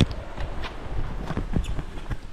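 Camera handling noise: a quick run of irregular knocks and scrapes as the camera rubs against the aviary's shade netting.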